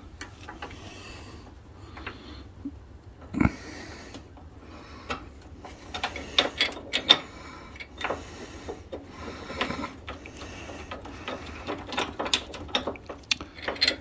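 Steel hitch hardware being handled while a nut is started on its bolt by hand: irregular small metallic clicks and clinks, more frequent in the second half, with one heavier knock about three and a half seconds in.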